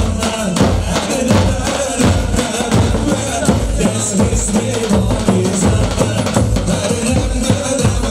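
Live Kurdish halay dance music: davul bass drums beaten in a steady, driving rhythm under a continuous melody.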